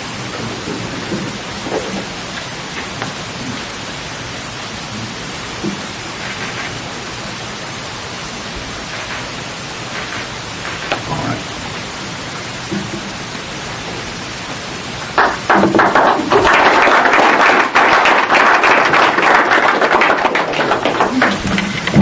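Steady room hiss with faint, low voices. About fifteen seconds in, a small audience starts clapping loudly, and the applause carries on.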